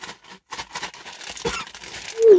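A plastic crisp packet rustling and crinkling in a series of quick crackles as it is handled and a hand reaches inside.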